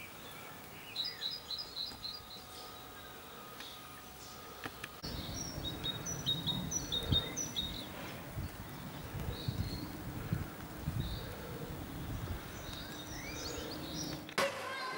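Small songbirds chirping in short, high, quick phrases, repeated several times. About five seconds in, a low rumbling outdoor noise comes in underneath.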